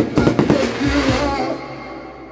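Fireworks shells bursting in a quick run of bangs during the first half second, over music; the bangs and music fade toward the end.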